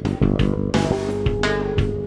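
Fretless electric bass played as a lick of plucked notes, with one note held and ringing from about the middle.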